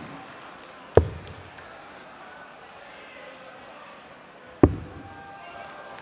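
Two steel-tip darts thudding into a Unicorn Eclipse HD sisal bristle dartboard, about three and a half seconds apart, over the low murmur of a large hall.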